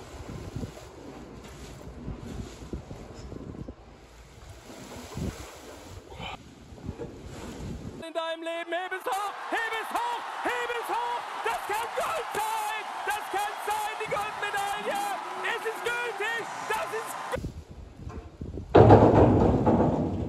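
Faint rustling and shuffling as a steel ring feeder is shoved through straw and dung. About eight seconds in, this cuts to an arena crowd cheering a weightlifter, many voices together, for about nine seconds. Near the end the farm sound comes back much louder.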